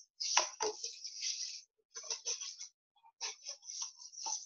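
Paper cups and plastic straws being handled: short bursts of scraping and crinkling as a straw is pushed through holes punched near a paper cup's rim, with a couple of light knocks about half a second in.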